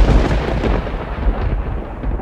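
A deep rolling rumble that starts abruptly at full loudness and keeps going, its upper hiss slowly dying away.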